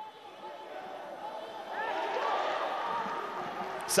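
Pitch-side ambience of a football match played in an empty stadium: indistinct shouts from players and bench echoing around the ground, swelling about a second in and holding until near the end.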